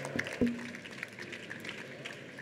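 Low steady room noise of a large hall with a few sharp clicks over the first half second and a single low thump about half a second in.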